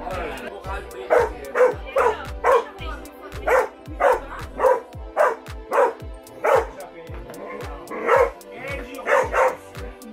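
German Pinscher barking, about fifteen sharp barks in quick runs with a short lull near seven seconds. Background music with a steady beat runs underneath.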